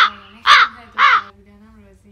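Three loud animal calls about half a second apart, each rising and then falling in pitch.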